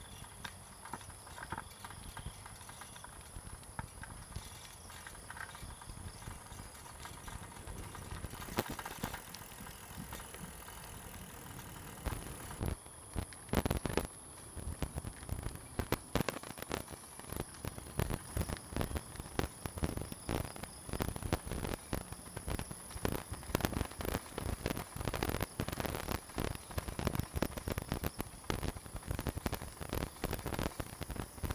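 Bicycle rattling and its tyres rolling over a rough, uneven path: a dense, irregular clatter of knocks over a low rumble, which grows louder and busier about twelve seconds in.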